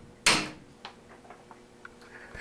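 A hammer strikes a punch on top of a reloading sizing die's decapping pin once, about a quarter second in, with a short metallic ring; this drives out a stuck case. Several faint light ticks follow.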